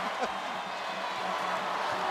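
Basketball arena crowd cheering, a steady din of many voices.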